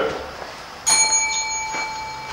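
A single bell-like ding about a second in: a clear metallic ring of a few high tones that holds and fades over about a second and a half.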